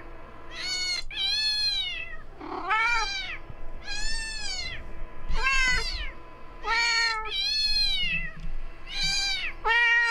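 Recorded cat meows played through a smartphone speaker, high-pitched and repeating about once a second. The tortoiseshell cat answers with a deeper meow about two and a half seconds in and again near the end.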